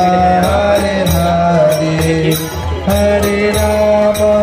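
A group of Krishna devotees singing a devotional bhajan together, over a sustained low drone, with a steady percussion beat of about three strokes a second.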